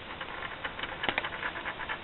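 A Perplexus Rookie maze ball being turned by hand: its small ball rattles and clicks along the plastic tracks inside the clear sphere as a run of irregular light clicks, with a few sharper ones about a second in.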